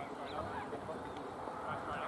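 Outdoor field ambience: short bird calls scattered over a murmur of distant voices.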